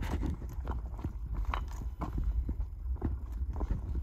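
Footsteps on a shore of loose, flat rock slabs, the stones clacking together at each irregular step, over a low wind rumble on the microphone.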